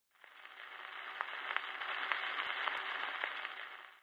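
Surface noise of a 78 rpm shellac gramophone record in the lead-in groove: a steady hiss that fades in over the first second, with scattered clicks, then fades out near the end just before the music starts.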